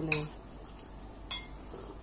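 Tableware clinking at a meal: two sharp clinks, the first and louder just after the start, the second a little past a second in.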